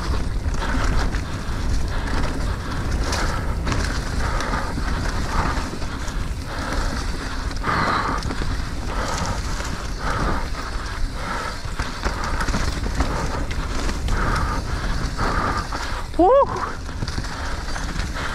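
Mountain bike rolling downhill on a dirt trail strewn with dry leaves: steady tyre noise over dirt and leaves, with a constant low rumble of wind on the microphone. A short vocal exclamation from the rider comes near the end.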